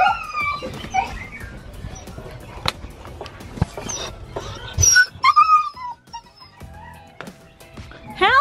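Siberian husky puppy whining and yipping in short high-pitched calls, loudest about five seconds in, over scattered scuffling clicks.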